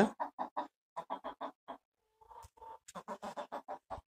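Rhode Island Red hen clucking in quick runs of short clucks, about six a second, pausing briefly in the middle before a second run.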